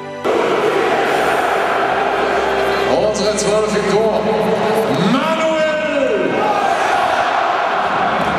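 Live sound of a packed football stadium crowd under a closed roof, with the stadium announcer's voice echoing over the PA as the team line-up is read out. It cuts in suddenly just after the start.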